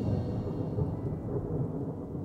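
A low, rolling rumble like thunder, loudest right at the start and then easing off to a steady rumble.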